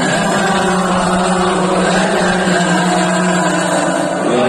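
A group of men chanting in unison, holding one long steady note that gives way near the end.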